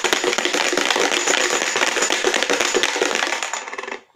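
Small hard pieces rattling inside a plastic container as it is shaken hard and without pause: a dense clatter that stops abruptly just before the end.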